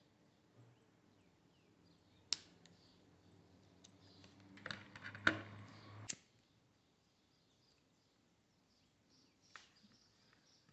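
Scissors snipping polypropylene macramé cord: a sharp snip about two seconds in and a cluster of clicks around five to six seconds, with faint handling of the cord. Then near silence.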